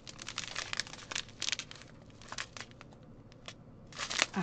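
Small clear plastic bags of diamond-painting drills crinkling as they are handled and squeezed, with irregular sharp crackles.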